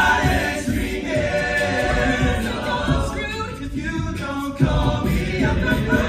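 All-male a cappella group singing in close harmony into handheld microphones, amplified through a theatre sound system. There is a sharp swell in level about two-thirds of the way through.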